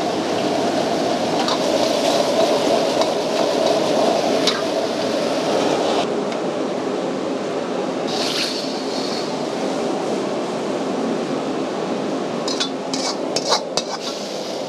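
Steady roar of a commercial gas wok burner with sauce simmering in the wok. A metal ladle clinks now and then against the wok and the plate, with several clinks close together near the end.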